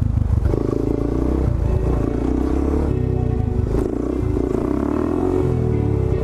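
Suzuki DR-Z400SM supermoto's single-cylinder engine running steadily under throttle while the bike is held in a wheelie.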